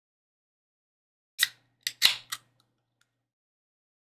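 Four sharp clicks or snips in quick succession, close to the microphone, about a second and a half in, all within one second.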